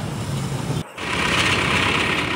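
Low traffic rumble, broken off by a brief gap about a second in, then a forklift's engine running close by with a steady hissing whine.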